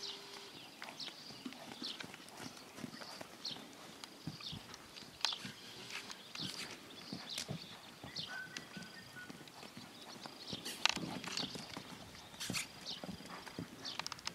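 Hoofbeats of a young stallion cantering on a lunge line over sand: a continuous run of soft, uneven thuds and knocks, a few louder ones near the end.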